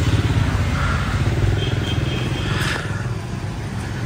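Motorbike engines in passing street traffic: a steady low rumble that eases a little toward the end. A brief sharp clatter comes about two and a half seconds in.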